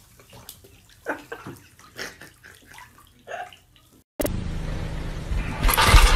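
Water sloshing and splashing lightly in a filled bathtub, in a few short separate splashes. About four seconds in, this cuts off abruptly into a loud, steady rushing noise.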